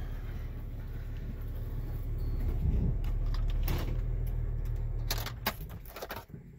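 Jeep engine running at low speed on a rough dirt trail, heard from inside the cab. The rumble grows a little louder about halfway through and eases off near the end, with a few sharp knocks in the second half.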